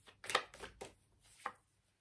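A few short, light taps and knocks on a tabletop, four or five in two seconds, the loudest about a third of a second in, as tarot cards are handled.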